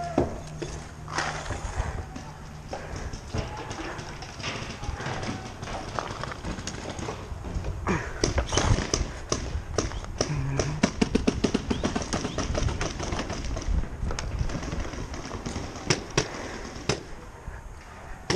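Paintball markers firing: scattered shots at first, then a long run of rapid shots starting about eight seconds in and lasting several seconds, and a few single shots near the end.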